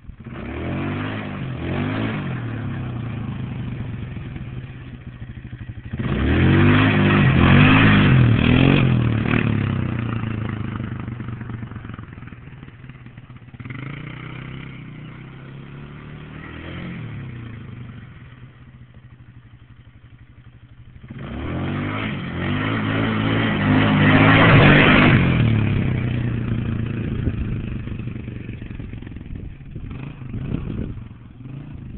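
Polaris Scrambler ATV engine revving hard with repeated rising and falling pitch as it shifts up through the gears. It passes close twice, loudest about six to ten seconds in and again from about twenty-one to twenty-seven seconds in, and fades between the passes.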